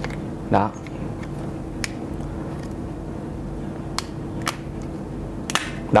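Plastic retaining clips of a Nokia Lumia 930's back cover snapping loose as the cover is pried off the phone's body: about four sharp, separate clicks spread over several seconds.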